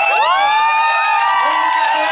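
Crowd cheering: many voices whooping together, sliding up in pitch near the start and then holding a long 'woo' through the rest.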